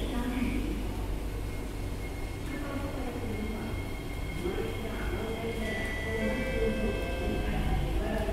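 Steady low hum of a C151C MRT train standing at a platform with its doors open, its onboard equipment running while stationary.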